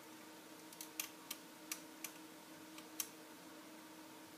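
A few light, sharp clicks of small plastic robot-arm parts being handled and adjusted, spread over about three seconds, above a faint steady hum.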